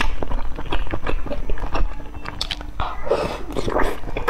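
Close-miked chewing of soft, wet food: a quick run of moist mouth clicks and smacks, with a noisier, wetter stretch near the end.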